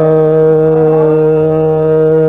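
Hindustani classical male voice singing raag Bihagada, holding one long steady note.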